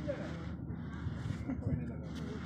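Faint, indistinct voices over a steady background rush.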